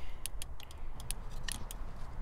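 A string of small, sharp clicks and ticks, irregular and about a dozen in two seconds, over a low steady rumble.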